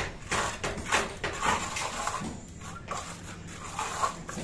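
Steel trowel scraping over wet neat-cement paste on a plastered wall, in repeated smoothing strokes as the surface is finished smooth.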